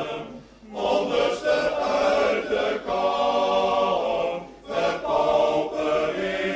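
Choir singing a song in Dutch, in phrases, with brief pauses between phrases about half a second in and about four and a half seconds in.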